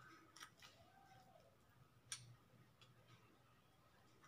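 Near silence with a few faint clicks of a thin stick stirring sandalwood face-pack paste in a small glass bowl, the clearest about two seconds in.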